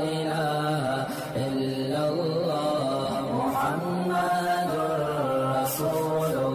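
Chanted vocal music: a voice holding long, steady notes that shift slowly in pitch.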